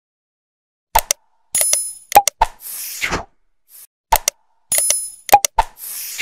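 Subscribe-button animation sound effect: mouse clicks, a bell-like ding with ringing high tones, then a whoosh. It starts about a second in and plays twice, about three seconds apart.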